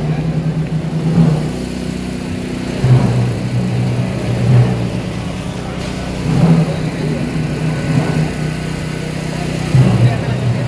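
Sousaphones and other low brass of a procession band playing held bass notes, the notes changing pitch and swelling every second or two, over a murmuring crowd.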